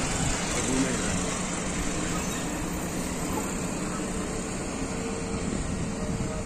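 Steady outdoor rushing noise of road traffic, with no single event standing out.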